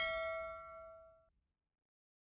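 A bell-like chime sound effect for the notification bell, a single ding ringing out on several steady tones and fading away within about a second.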